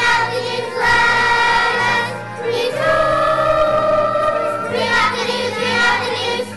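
Children's choir singing, holding long notes over a steady low accompaniment.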